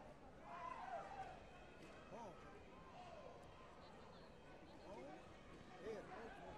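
Faint, distant voices in a large hall: scattered calls and chatter, with no clear words.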